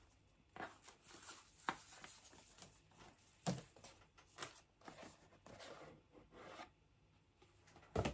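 Faint rustling and rubbing as a ribbon is pulled off a cardboard jewellery gift box and the box is handled and its lid lifted off, with scattered light taps and a sharper knock about three and a half seconds in.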